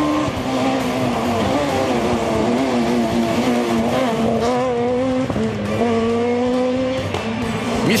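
Rally car engine running hard along a special stage, its note held high and wavering, with brief drops in pitch about five seconds in and again near the end.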